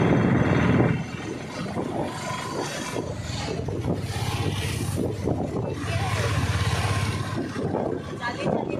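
Steady vehicle and road noise heard from inside a moving open-sided rickshaw, louder for about the first second, with faint voices underneath.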